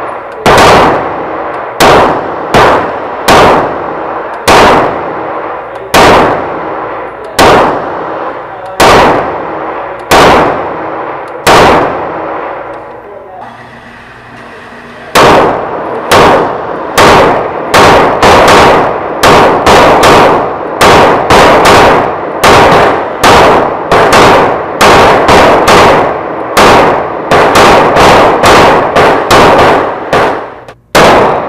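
Canik TP9SF 9mm pistol firing shot after shot, each report ringing in the indoor range. The first string goes at about one shot a second. After a pause of about three seconds a faster string follows, at about two shots a second.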